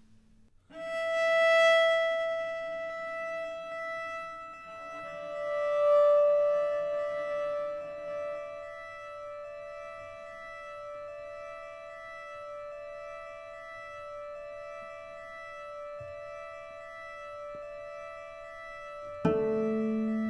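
Solo cello playing long, high bowed notes: one note comes in about a second in, a second note joins about five seconds in, and the two are held and layered by live looping into a steady drone. A louder, lower cello note enters near the end.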